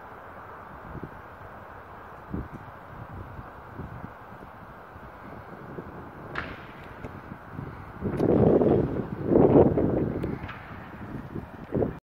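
Wind blowing on the phone's microphone over a steady outdoor hiss, with a few faint knocks and two much louder gusts, one right after the other, near the end.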